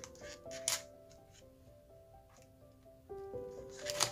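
Soft background music of slow, held notes, with a paper sketchbook page rustling as it is handled briefly about a second in, and again, louder, as the page is turned over near the end.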